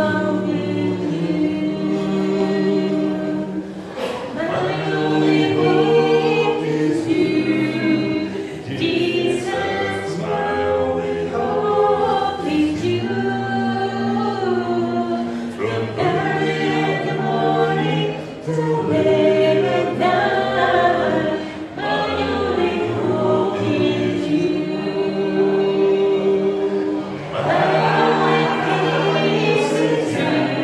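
A small group singing a Spanish-language hymn a cappella in several-part harmony, low and high voices together. The voices hold long notes in phrases, with short breaks between them.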